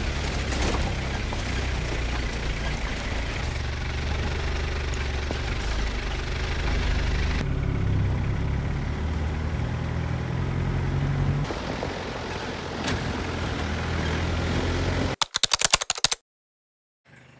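Steady low rumbling noise, shifting slightly at each picture cut. Near the end, a quick run of keyboard-typing clicks, then it goes silent.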